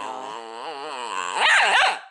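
Bedlington terrier puppy vocalizing in one long, wavering, whining call that gets louder and swoops up and down near the end.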